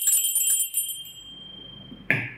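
Two small brass hand bells shaken rapidly, the strokes stopping just under a second in and leaving one high bell tone ringing on and fading away.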